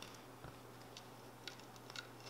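Very quiet, soft rubbing of a cloth rag pressed over a vinyl chassis wrap, with a few faint ticks, over a steady low hum.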